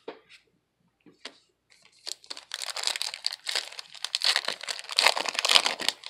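A 2020-21 Panini Prizm NBA trading card pack being torn open by hand, its foil wrapper crinkling. A few light clicks in the first two seconds, then dense crackling from about two seconds in.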